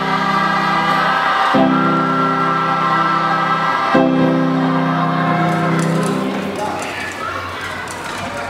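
A large group of school students singing in chorus, holding three long sustained chords that change about every two and a half seconds and fade out after about six seconds, followed by murmured chatter.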